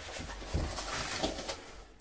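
A cardboard mailer box being opened and handled by hand: a few soft scrapes and knocks of the card, the first about half a second in and more around a second and a half.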